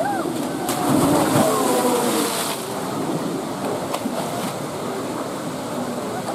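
A polar bear plunging into its pool: a splash of water that lasts about two seconds and is loudest near the start, with onlookers' voices exclaiming over it.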